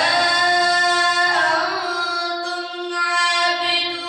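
A boy reciting the Quran in melodic tajweed style, drawing out long held notes that bend slowly in pitch.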